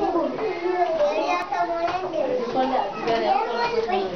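Many children's voices talking at once in a classroom, a steady overlapping chatter with no single voice standing out.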